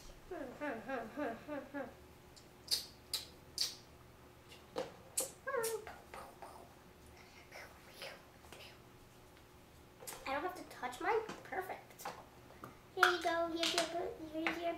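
A young girl's voice making sing-song sounds without clear words, broken by several sharp slaps of palms pressing Play-Doh flat between the hands. The voice is loudest near the end, with long held notes.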